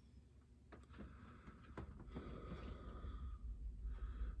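Quiet room with a few faint light clicks and soft breathing.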